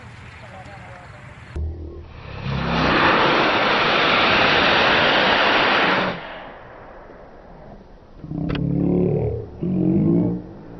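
A loud, steady rushing noise lasting about three and a half seconds that stops abruptly, then a single click and faint voices near the end.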